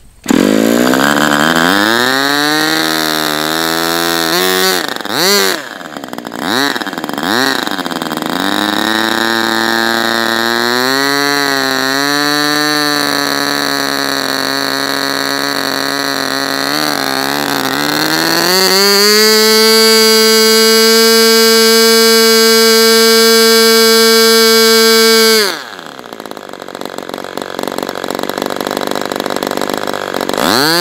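Super Tigre G40 Ring two-stroke model glow engine, spun by an electric starter, catches at once and runs with its propeller, the pitch rising, wavering and stumbling for several seconds before settling. Near the middle it climbs to a steady high-speed scream at full throttle, about 13,500 rpm, then its speed drops sharply about five seconds before the end and climbs back up near the end.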